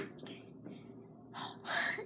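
A child's quick, audible breath in, about a second and a half in, after a quiet stretch with a few faint ticks of handling.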